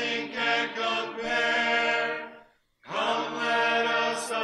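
Vocal music with sustained sung notes. One phrase ends about two and a half seconds in, and a new one starts a moment later.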